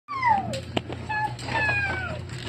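A cat meowing: a falling meow right at the start, a short call about a second in, and another drawn-out falling meow near the end, over a low steady hum.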